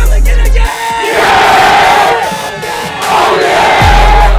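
A group of football players shouting together in a pregame huddle, a loud team battle cry, over a hip hop backing track. The track's heavy bass drops out under a second in and comes back near the end.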